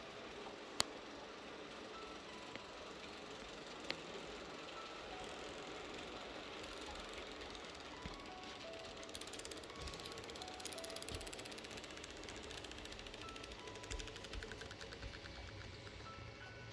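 A model train, a DB class 111 electric locomotive hauling Intercity coaches, rolling along the layout's track. In the second half its wheels tick rapidly over the rail joints, getting louder as it draws near. Faint music plays along.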